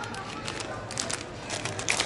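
Plastic cereal bags crinkling as they are handled and pulled off a supermarket shelf: a handful of short, scattered rustles over a faint steady background hum.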